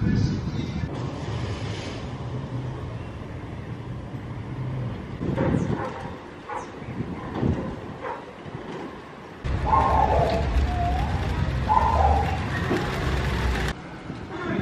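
Street ambience with a low, steady hum of motor traffic and a few knocks. Past the halfway point a louder stretch of low rumble carries a few short pitched calls, then stops abruptly near the end.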